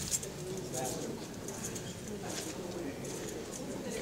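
Indistinct low murmur of voices in a meeting hall, with light rustling and clicking throughout.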